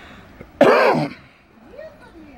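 A person coughing once, loud and close to the microphone, lasting about half a second.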